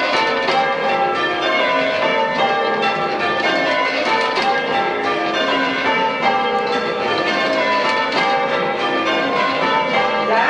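Church bells, a ring with an 8-3-3 cwt tenor, being rung down in peal: the bells strike together in rounds while the ringers gradually lower them. The strokes overlap continuously.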